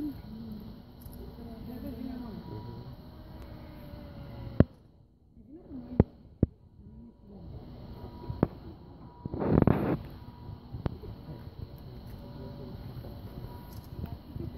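Voices of people talking in the background, with a few sharp clicks in the middle and a short loud rush of noise about two-thirds of the way through.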